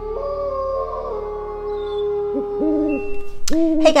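Halloween-style intro music with long held tones, with an owl hoot sound effect calling twice in the second half.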